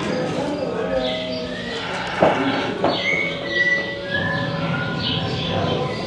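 A film soundtrack playing over exhibit speakers in a reverberant room: a busy mix of indistinct sounds and voices, with two sharp knocks a little over two seconds in and a brief high tone about a second later.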